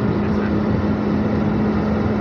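Inside the cabin of a 2005 Opel Vectra C at about 140 km/h under hard acceleration: a steady engine drone mixed with road and wind noise.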